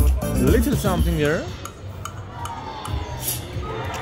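Rich Little Piggies video slot machine sounds: its bass-heavy win music stops about a second and a half in, and sliding electronic tones follow as the reels spin again.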